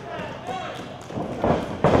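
A wrestler's running footfalls on a wrestling ring's mat: two heavy thuds about a third of a second apart near the end.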